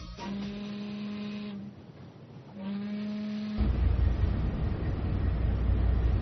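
Two long, steady horn blasts of the same low pitch, about a second apart, followed by a loud low rumble.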